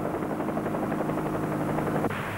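Steady drone of an aircraft's engine heard from on board, holding an even pitch and cutting off abruptly at the end.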